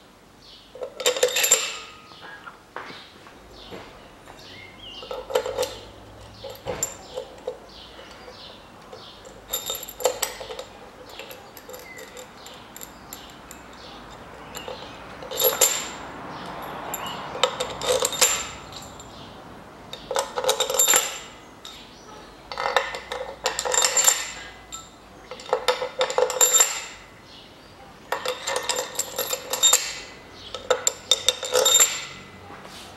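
Ratchet wrench clicking in short bursts of rapid metallic clicks, several times, as the engine's cylinder head bolts are run down and snugged before final torquing.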